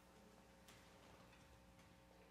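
Near silence: hall room tone with a faint hum, and one faint click about two-thirds of a second in.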